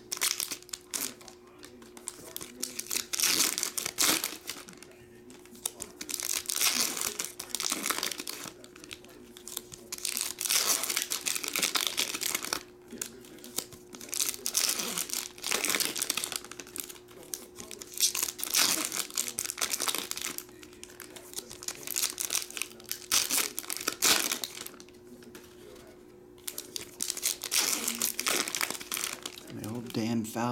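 Foil trading-card pack wrappers being torn open and crinkled by hand, in repeated bursts of crinkling and tearing every second or two, over a faint steady hum.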